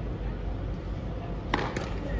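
Tennis racket striking the ball on a forehand: a sharp crack about one and a half seconds in, with a second, smaller click a fraction of a second after it.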